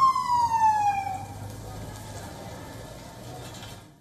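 A siren's wail falling in pitch over about a second, loud at first, then giving way to quieter street noise; the sound cuts off abruptly near the end.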